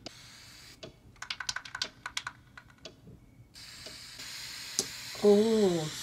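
A quick run of sharp, keyboard-like clicks, then from a little past halfway a steady high hiss of an airbrush spraying paint, with a voice coming in near the end.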